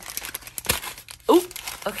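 Plastic clothes hangers clicking and clothes rustling as they are rearranged on a closet rod, with a sharp knock a little before the middle. A short vocal sound about two-thirds of the way in is the loudest moment.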